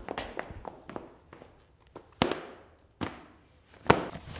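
High-heeled boots clicking across a polished concrete floor in quick steps, then three separate, louder sharp knocks with a ringing tail, the last near the end being the loudest.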